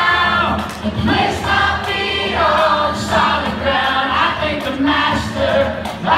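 Live contemporary worship music: a congregation singing a worship song together with the band, many voices over a steady accompaniment.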